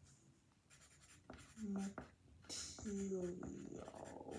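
Wooden pencil writing on paper, faint scratching strokes, with a girl's voice murmuring twice in the middle.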